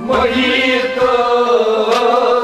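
Kashmiri Sufi song: male voices singing long, held notes together over harmonium accompaniment, coming in suddenly at the start.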